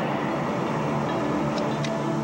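Steady road and engine noise of a moving car heard from inside the cabin, with two faint short ticks near the end.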